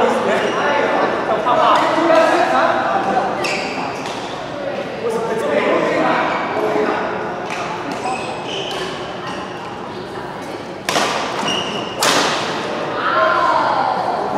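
Badminton rally: sharp racket-on-shuttlecock hits, two of them loudest near the end about a second apart, each ringing briefly in the large hall.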